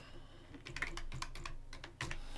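Typing on a computer keyboard: a quick run of keystroke clicks starting about half a second in.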